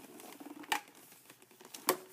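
Hands working at a doll's packaging ties inside a cardboard box: faint rustling with two sharp clicks about a second apart.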